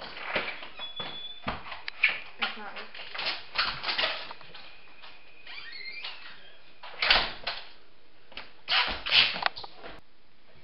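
Indistinct voices mixed with a string of short knocks and bumps, loudest about two seconds in, at seven seconds and again near nine seconds: people moving about a small room.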